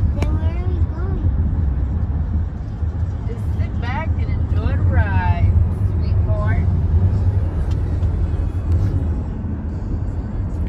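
Steady low road and engine rumble inside a moving car's cabin, with a few short vocal sounds about four to six seconds in.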